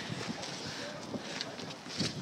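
Faint wind buffeting the microphone, an even rushing noise with no distinct event.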